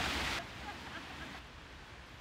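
Waterfall rushing down a rock face as a steady hiss that cuts off suddenly less than half a second in. After that only a fainter hiss is left, with faint distant voices.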